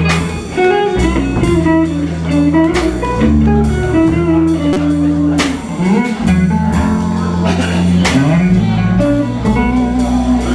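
Live blues band playing: an electric guitar plays lead lines over electric bass and a Tama drum kit with steady cymbal and drum hits.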